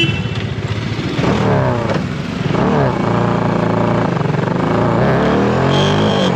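Motorcycle engine running while riding, its pitch rising and falling several times as the bike speeds up and slows.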